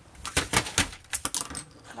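Sheets of heavy paper and a board being handled and set down on a work table: a quick, irregular series of light knocks and taps with some paper rustle.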